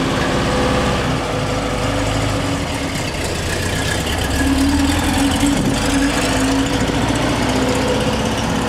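1965 Porsche 912's air-cooled flat-four engine idling steadily just after starting, a little louder between about four and six seconds in.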